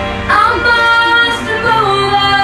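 A girl's voice singing a pop ballad into a handheld microphone over accompaniment. She holds one long note from about a third of a second in, then moves to a lower note near the end.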